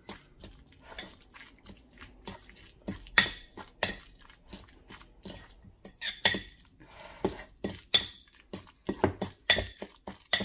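A metal fork clinking and scraping against a ceramic bowl as guacamole is mashed and stirred, in irregular taps with a few louder clinks.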